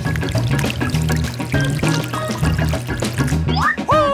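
Background music with a steady bass line, over the pouring sound of liquid chocolate running down a chocolate fountain.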